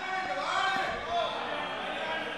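Faint, overlapping voices of members talking off-microphone in a large parliamentary chamber, over the chamber's steady background noise.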